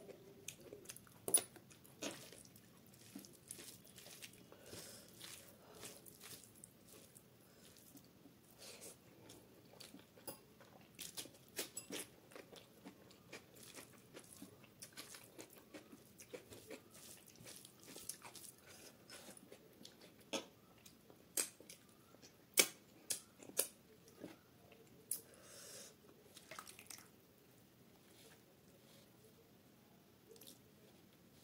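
Close-miked chewing and mouth sounds of a person eating rice with dal and curry by hand, with many sharp wet clicks and smacks scattered through, thickest about two-thirds of the way in and thinning out near the end.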